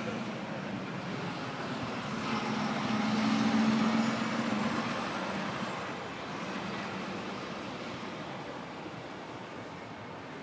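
A vehicle passing on a city street: its engine hum swells to a peak about three to four seconds in, then fades, over steady traffic noise.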